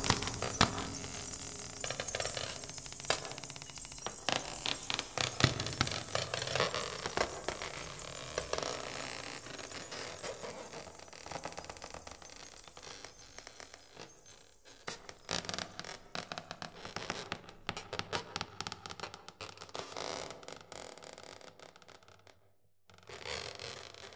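Small hand percussion clicking, rattling and scraping in a dense, irregular run that gradually fades, broken by a brief silence near the end and a short final flurry.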